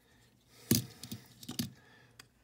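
Small die-cast model cars handled on a tabletop: one sharp click a little over half a second in, then a few lighter clicks and taps as a car is set down and another picked up.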